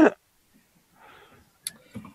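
A lull in a video-call conversation: a spoken word trails off, then it goes almost quiet, with a faint breathy sound about a second in and a single sharp click shortly after.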